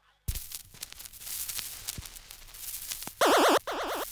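Crackle and pops of a vinyl record's surface between tracks, opening with a sharp click. Near the end a loud warbling synth siren starts up, wobbling quickly in pitch, cutting out briefly and coming back: the start of the dub version.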